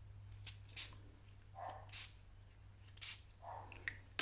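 Pump-spray bottle of Dylusions Shimmer Spray spritzing ink mist onto paper in about four short, separate hisses.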